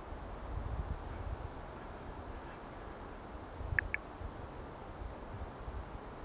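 Faint lakeside outdoor ambience with a low, uneven rumble of wind on the microphone. A bird gives two short, high calls close together nearly four seconds in.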